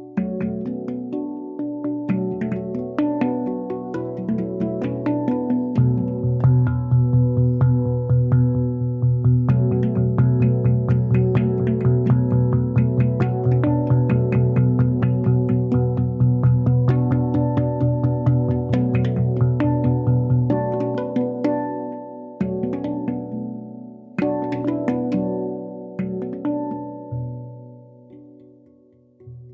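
A handpan played by two people at once, four hands tapping a quick, dense rhythm of ringing metal notes over a repeated deep bass note. The playing thins to a few separate strikes and dies away near the end.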